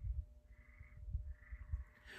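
Faint animal calls, three short ones about a second apart, over low irregular bumps.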